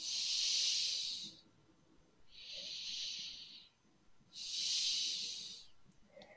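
A person breathing close to a microphone: three breaths, each about a second and a half long, coming roughly every two seconds, louder and softer in turn like in- and out-breaths.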